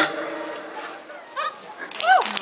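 Drum-backed music stops, leaving faint crowd noise, then a few short high-pitched yelping cries that rise and fall in pitch, the loudest right at the end.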